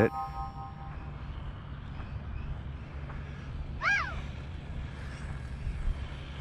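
A short chime rings and fades at the start as an on-screen caption pops up, over a steady low rumble of road and wind noise from the moving camera vehicle. One brief rising-and-falling chirp sounds about four seconds in.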